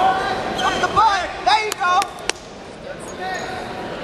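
Short shouts from coaches and spectators during a wrestling match, with three or four sharp knocks or slaps about halfway through, then quieter.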